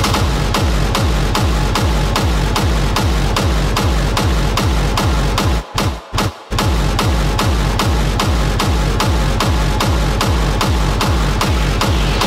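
Hard techno DJ mix with a heavy, steady kick drum at about two beats a second. The track cuts out briefly in two quick gaps near the middle, then the beat drops straight back in.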